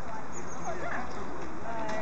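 Geese calling, many short overlapping honks that rise and fall, over a steady outdoor background hiss.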